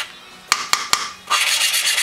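Valve face grinding against its seat with lapping compound on a 4.5 HP Honda go-kart engine, twisted quickly back and forth with a suction-cup lapping stick. Just after a pause, about half a second in, there are three sharp taps as the valve is lifted and dabbed onto the seat to spread the compound, then the fast rasping grind starts again.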